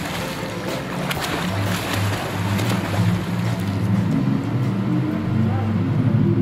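Instrumental background music, low pitched notes stepping up and down, over a rushing noise that thins out over the first few seconds.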